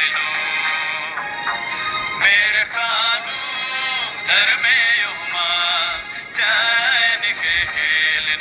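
Kurukh Christian devotional song: a sung melody with wavering, ornamented notes over a backing track. It sounds thin, with almost no bass.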